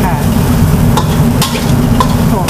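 Spatula stirring and tossing yard-long beans with shrimp paste in a steel wok, over a steady sizzle of frying. A couple of sharp scrapes of the spatula on the wok come about a second and a second and a half in.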